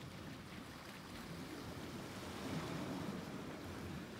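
Steady wash of the sea with a low rumble, the outdoor ambience of a rocky shoreline.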